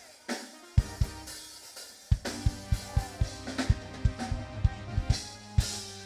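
Live band's drum kit playing a sparse kick-and-snare beat with no vocal, keyboard chords joining in about two seconds in.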